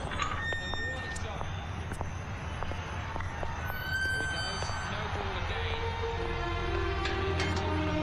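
Film soundtrack: a steady low ambient hum with a few faint clicks, then a background music score that comes in past the halfway mark with held notes that grow louder.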